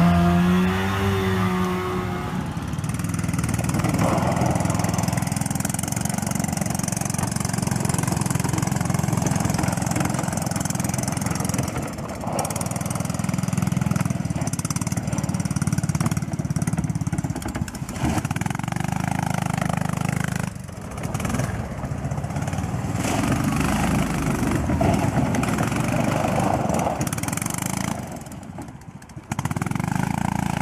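Small engines of six- and eight-wheeled amphibious ATVs running and revving as they drive, with a brief drop in level near the end.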